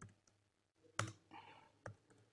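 Faint keystrokes on a computer keyboard as a username is typed in, with a sharp click about a second in and another near the end.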